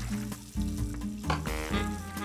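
Handful of aerosol foam being squished and worked between the hands, a fine crackle of many small clicks. Background music plays under it.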